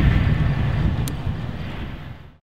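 Steady low outdoor rumble with a single faint click about a second in, fading out toward the end.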